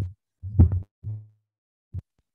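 Three low, muffled bursts from a misbehaving microphone while it is being checked. The second fades away, and the last is very short.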